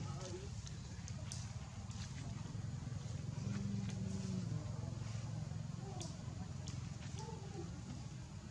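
Faint background voices talking, over a steady low rumble, with a few light clicks.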